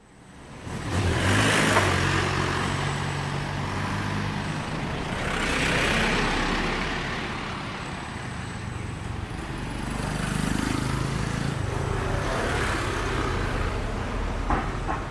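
Street traffic: several vehicles, among them a pickup truck, pass one after another, their engine hum and tyre noise swelling and fading four times. The sound fades in at the start, and motor scooters approach near the end.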